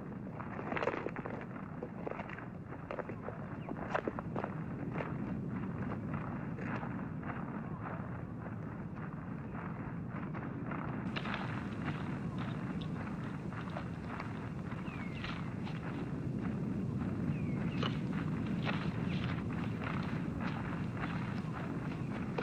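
Soldiers' boots and kit shuffling and rustling as they stand in ranks, with scattered small clicks and knocks, and a couple of short high chirps about two-thirds of the way through.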